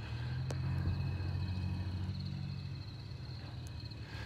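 Low, steady engine rumble of a vehicle, swelling slightly about a second in and easing off toward the end.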